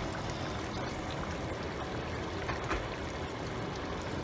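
Boiling water poured in a steady stream from an electric kettle into a wide pan of curry goat and gravy, the water splashing into the liquid.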